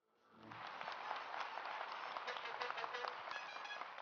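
Audience applauding, fading in over the first second, holding steady, then cut off abruptly at the end.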